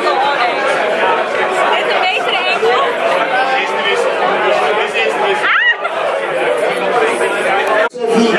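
Crowd chatter: many people talking at once in a large room. It breaks off sharply for a moment near the end.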